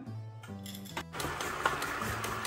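Background music, joined from about a second in by an electric stand mixer running steadily, its flat paddle turning through thick brownie batter as chocolate chips are mixed in.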